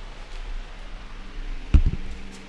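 Rustling and handling noise as someone moves about, with a single dull thump near the end.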